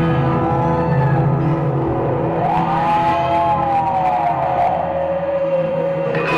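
Live rock band in a spacey, droning passage of sustained chords, with a siren-like gliding tone that swoops up about halfway through and slowly sinks again.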